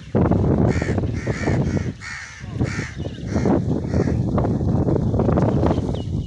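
A bird calls four times in the first three seconds, about once every two-thirds of a second, over a loud low rumble on the microphone.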